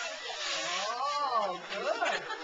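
Wrapping paper rustling and tearing as a small child pulls it off a gift box, with a voice drawing out one long rising-then-falling sound in the middle.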